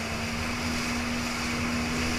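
Jet ski engine running steadily at speed, a constant drone over the rush of water spray and wind.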